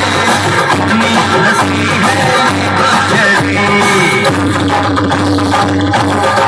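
Loud music with singing played through an outdoor rig of horn loudspeakers.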